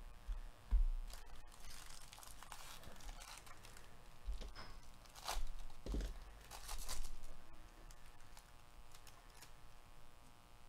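Foil wrapper of a 2022 Bowman Baseball jumbo card pack being torn open and crinkled by gloved hands, in several bursts, with a few low bumps of handling.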